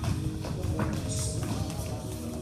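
Tap shoes striking a wooden studio floor in a few scattered, sharp taps over a recorded song playing through the room.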